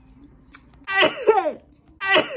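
A woman coughing: one loud, hoarse, voiced cough that falls in pitch, about a second in.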